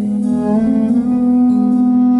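Live cello, acoustic guitar and drum trio playing samba-jazz: bowed cello holding long notes with slides between them, over acoustic guitar and drums.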